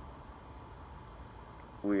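Crickets chirping faintly, a thin high-pitched pulsing trill that runs on steadily under a low background hum.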